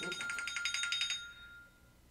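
Electronic reminder alarm going off: a rapidly pulsing, high-pitched electronic chime that stops just over a second in, leaving a faint tone fading out.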